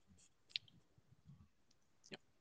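Near silence: room tone, with one short, sharp click about half a second in.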